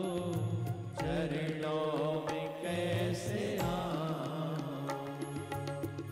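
A Hindi devotional bhajan to Shiva: a male voice singing long, ornamented, wavering phrases over a steady low instrumental drone, with percussion struck about once a second.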